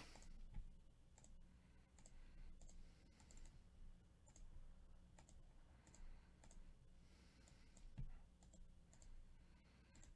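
Faint scattered clicks of a computer mouse and keyboard, with one louder click about eight seconds in.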